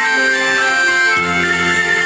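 Saxophones playing a slow melody in long held notes, with a lower sustained part joining in about a second in.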